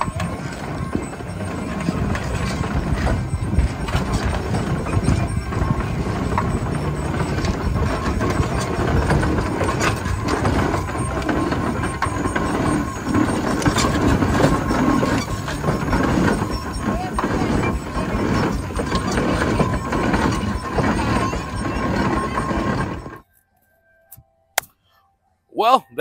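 Advance-Rumely steam traction engine running as it drives along, with a dense run of mechanical knocks and clatter mixed with voices. The sound cuts off abruptly about three seconds before the end.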